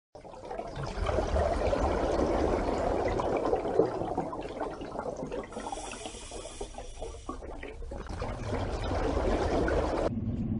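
Rushing, gurgling water sound laid over an underwater-themed intro graphic, fading in over the first second, with a brighter, hissier stretch in the middle.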